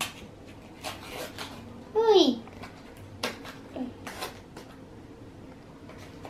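Peel-and-unroll paper wrapper being pulled off a round plastic toy container: scattered short crackles and rips. About two seconds in, a child's voice makes one short falling sound.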